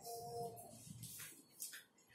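Faint rustling of a sheet of paper being picked up and handled, in a few brief rustles in the second half, over quiet room tone.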